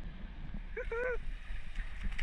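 Wind buffeting the microphone in a steady low rumble, with a woman's short laugh about a second in.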